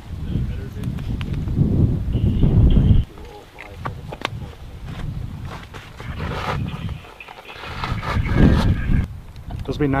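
Wind buffeting the microphone in uneven gusts, heaviest in the first three seconds and again near the end, with faint, muffled speech mixed in.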